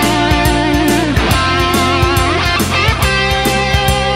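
Fender Stratocaster electric guitar playing a rock lead line of held, bent notes over a backing track with bass and a steady drum beat.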